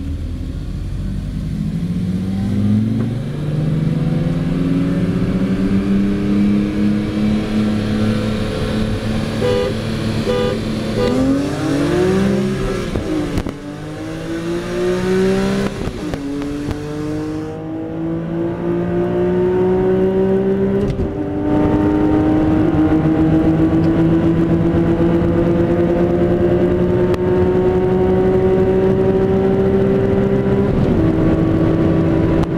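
BMW M S54 3.2-litre straight-six under full acceleration, heard inside the cabin: the engine note climbs steadily in each gear, dropping at upshifts about twelve, sixteen and twenty-one seconds in, and falls again right at the end.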